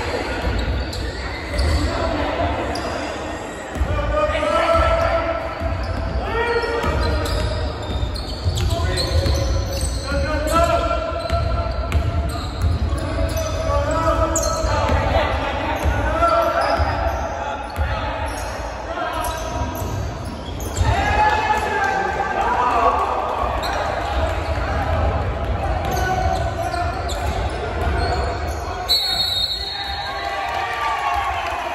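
Basketball dribbled on a hardwood gym floor during game play, with players, coaches and spectators calling and talking. Everything echoes in the large gym.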